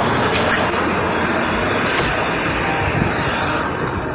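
Loud, steady rumble and rushing noise of a moving party bus.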